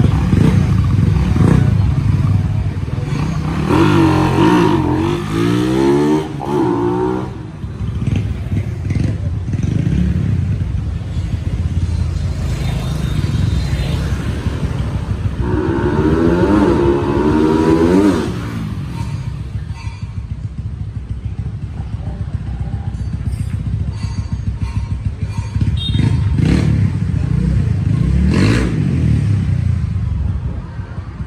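Suzuki Satria 150i (Raider) single-cylinder engine, running on an Aracer RC Mini 5 aftermarket ECU, pulling through three hard accelerations with the engine pitch climbing high through the revs: a few seconds in, around the middle and near the end, with steadier running between.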